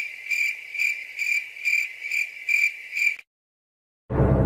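Cricket chirping, one high pulsed chirp repeating about two to three times a second, laid in as a night-time sound effect; it cuts off suddenly shortly before the end.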